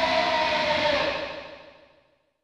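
The end of a rock track: the band's last sustained chord rings on and fades away over the second half, dying out to silence.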